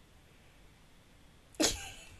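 Near quiet room tone, then about one and a half seconds in a woman bursts out in a sudden, explosive laugh.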